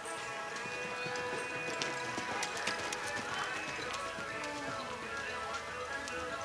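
Music playing, with the hoofbeats of a grey horse loping on an indoor arena's dirt floor; a run of sharp hoof strikes stands out about halfway through.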